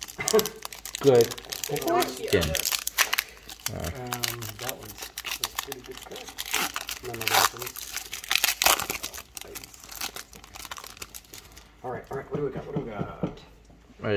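Foil trading-card pack crinkling as it is torn open and handled. The crackling stops about 11 seconds in.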